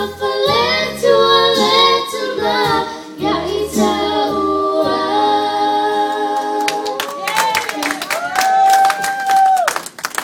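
Young girls singing a song into microphones over keyboard accompaniment. The low accompaniment drops out about halfway, and the song ends on a long held note. Clapping starts a few seconds before the end.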